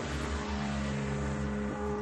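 Electronic synthesizer music: a steady low drone of layered held tones with a sustained note above it and a hissing wash on top.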